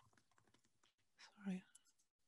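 Near silence with a few faint computer keyboard clicks, then a quiet 'sorry' about a second and a half in.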